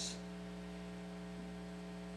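Steady electrical mains hum, a low drone with a stack of evenly spaced overtones.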